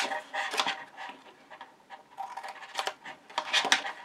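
Scissors snipping small wedges out of cardstock: a series of short cuts, with the paper handled between them.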